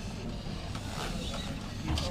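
Low, steady mechanical sound from a pub fruit machine over room hum, with no distinct clicks or jingles standing out.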